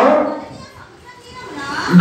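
A man preaching through a microphone and PA. His speech trails off at the start, leaving a brief quieter pause with faint background sound, and his voice starts again near the end.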